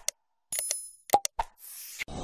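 Interface sound effects for a subscribe-button animation: sharp mouse-style clicks, a short bell-like ding about half a second in, two more clicks just past a second, then a brief whoosh near the end.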